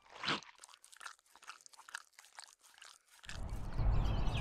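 Cartoon eating sound effect of a cupcake: one bite about a third of a second in, then a run of short, quick chewing sounds lasting about three seconds. Near the end a low rumble swells in.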